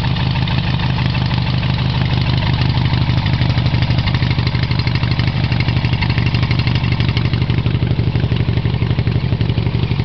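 Garden pulling tractor's engine running through Harley motorcycle exhaust pipes, a loud steady exhaust note. About three seconds in it grows a little louder and choppier.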